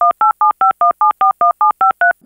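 Touch-tone telephone dialing: a quick run of about thirteen short two-note beeps, about seven a second, each a different keypad digit.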